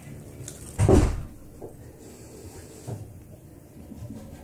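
A cat's paw striking a white cabinet door at floor level: one loud thump about a second in, then two light knocks.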